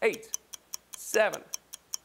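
Fast, steady ticking of a countdown-timer sound effect, about five ticks a second, with a man's voice briefly calling out counts between the ticks.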